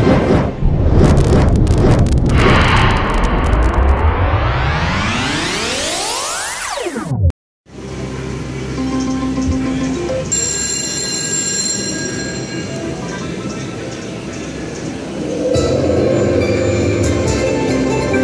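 A music sting with rising whooshing sweeps, cut off abruptly. After a brief silence comes the electronic music and chimes of a WMS Winning Fortune Progressives Dragon's Legend slot machine, which grow louder and fuller near the end as the free-spins bonus is triggered.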